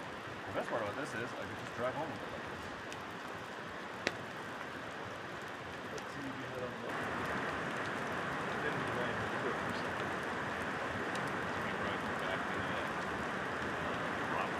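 Steady rain falling on a wet campsite, an even hiss that grows a little louder about halfway through. Faint distant voices can be heard in the first couple of seconds, and there is a single sharp click about four seconds in.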